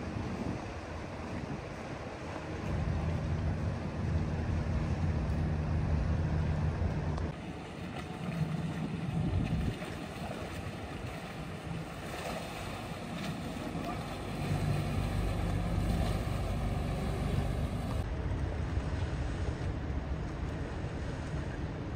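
Motorboat engines running as boats pass, a low drone that swells and fades several times, over the wash of water and wind on the microphone.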